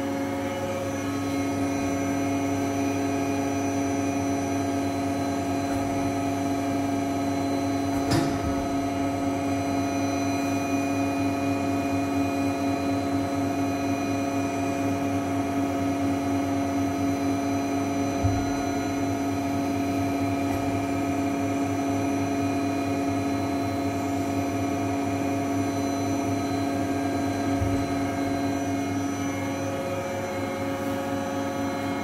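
1992 Reishauer RZ 362A gear grinding machine running with a steady hum made of several held tones. A sharp click comes about eight seconds in, and two fainter knocks come later.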